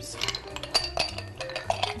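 Ice cubes tipped from a ceramic bowl into a stemmed wine glass: a quick run of clinks against the glass, with a light glassy ring.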